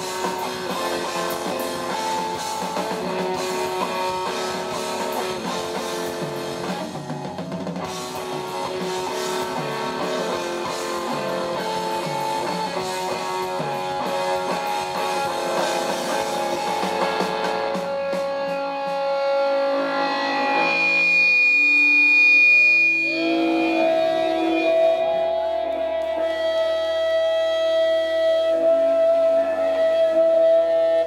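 Live rock band with electric guitars and a drum kit playing loudly. About two-thirds of the way through the drums stop and a few long held guitar tones ring on to the end.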